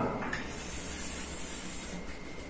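Chalk drawing a long line down a blackboard: a steady hiss.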